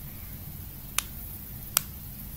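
Two sharp computer mouse clicks, about three-quarters of a second apart, over a low steady hum.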